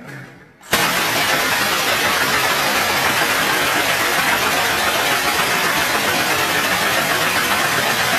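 A long, unbroken burst of automatic rifle fire that starts abruptly about a second in and runs on at a steady, loud level.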